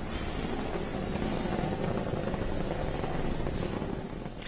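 Falcon 9 first stage's nine Merlin engines heard from the ground during ascent as a steady, low rumble.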